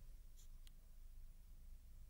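Near silence: room tone, with two faint ticks about half a second in.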